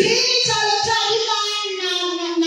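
A voice singing a long held note through a microphone; the pitch steps down in the second half. A few short low thumps sound under it.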